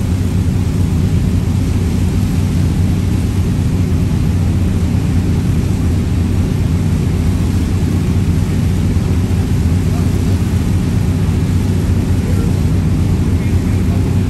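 A boat's outboard engine running steadily at low speed, a loud, even low drone.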